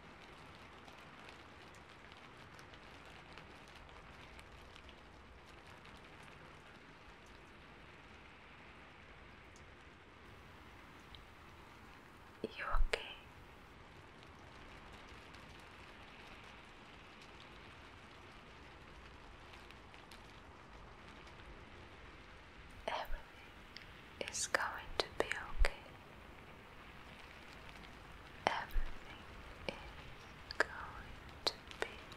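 A steady faint hiss, broken by a few short bursts of soft whispering: once about thirteen seconds in, then several in quick succession in the last third.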